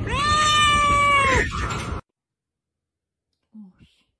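A domestic cat gives one long meow, lasting about a second and a half, rising at the start and falling away at the end. About halfway through, the sound cuts off abruptly.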